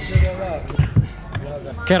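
A few dull thumps of heavy speaker cabinets and band equipment being handled and set down on the ground, with voices in the background.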